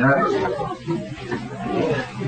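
A man's voice preaching, with a few unclear words.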